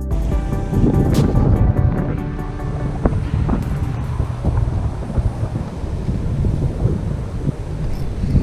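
Strong wind buffeting the microphone in a rumbling, gusty roar, with background music fading out over the first couple of seconds.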